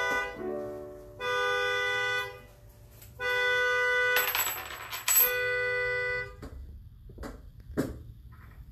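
Slow keyboard music: steady chords held for a second or more each, ending about six seconds in. A short burst of noise comes a little after four seconds, and a few soft knocks follow near the end.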